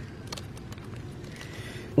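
Quiet, steady background noise with a few faint light clicks in the first half.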